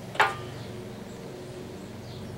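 A steady low machine hum, with one short sharp sound a fraction of a second in.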